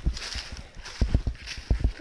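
Footsteps through dry fallen leaves: a few irregular low thuds of the steps, with a light rustle of leaves.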